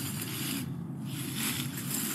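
Soft rustling and scraping noise as a person moves into a leafy shrub and brushes its branches, with no distinct snip of the pruners.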